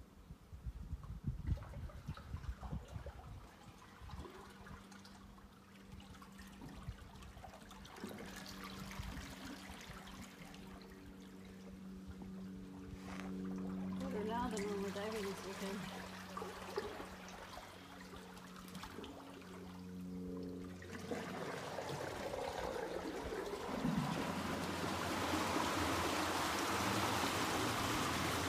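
Water surging and sloshing against the rock walls of the Devils Hole pool, earthquake-driven seiche waves bouncing back and forth in the narrow chasm. The rushing grows louder about two-thirds of the way through.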